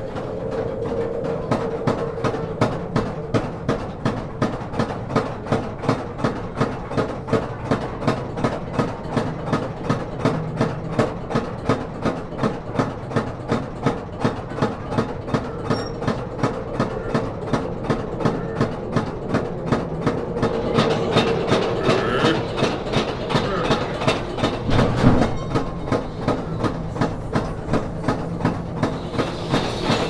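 Mine-ride train's wheels clacking over the rail joints in an even rhythm of about two clicks a second, over a steady hum. A louder stretch comes later, with a single heavier thump.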